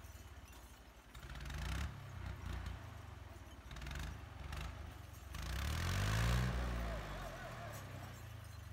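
Farm tractor's diesel engine labouring up a steep rocky slope. The engine speed swells about a second in and rises again more strongly just past the middle, the loudest part, before easing back.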